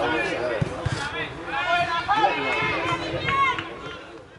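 Several people talking and calling out over one another, with a few brief low thuds about two-thirds of a second in.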